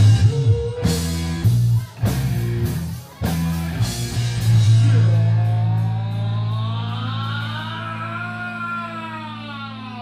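Live rock band with electric guitar, bass and drums striking a few sharp accents together, then holding a final chord that rings on and slowly fades, with a long note bending up and then down over it.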